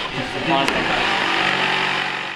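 Corded handheld electric power saw running steadily, its motor starting about half a second in, with a sharp click shortly after.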